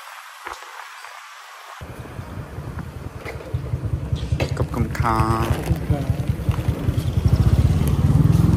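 Small motorcycle taxi engine running as the bike rides along, heard from the pillion seat, getting louder toward the end. The engine sound comes in about two seconds in, after a quiet start.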